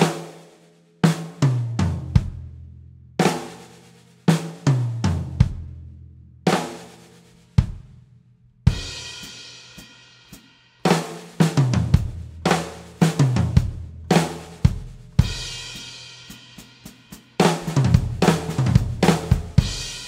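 Sakae drum kit with a brass snare played in a fill pattern built on flams and triplets: sharp drum strokes with ringing cymbals, a stretch of sustained cymbal wash about nine seconds in, and a dense run of rapid strokes near the end.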